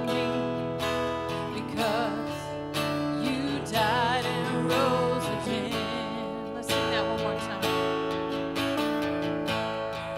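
A live song: a woman's amplified voice singing with vibrato over a strummed acoustic guitar.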